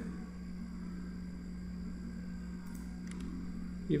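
A steady low background hum with one constant low tone and a soft hiss, with two faint clicks about three seconds in.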